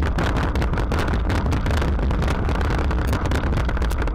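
Wire shopping cart rolling along a supermarket floor, picked up through a camera mounted on the cart: a loud, steady low rumble with a fast clatter of rattles from the wheels and basket.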